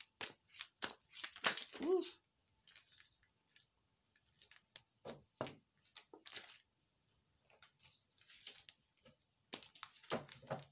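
Tarot cards being shuffled and handled: scattered soft flicks, slaps and rustles of card stock with quiet gaps between.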